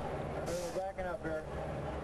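Faint voice over a steady low hum of racetrack background noise.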